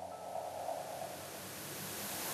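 Soft noise hiss slowly swelling in level, a noise sweep from an electronic dance track building up before the beat comes in.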